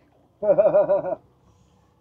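A short wavering vocal sound from a person, under a second long, its pitch wobbling quickly and evenly up and down.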